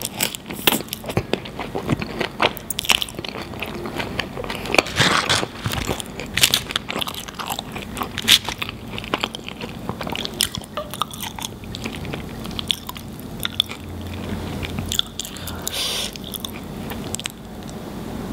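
Close-miked chewing of a mouthful of fries in melted cheese sauce: wet, sticky mouth sounds with many small clicks and crackles, thinning out after about twelve seconds.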